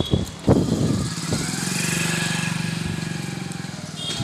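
A motor vehicle's engine passing by, swelling to the middle and then fading, after two sharp knocks near the start.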